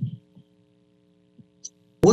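A pause in talk: a word trails off at the start, then only a faint steady electrical hum remains, with a few small faint clicks.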